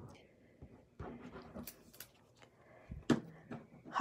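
Faint handling sounds of a liquid glue bottle's tip being dabbed and rubbed over cardstock, with one sharp click about three seconds in.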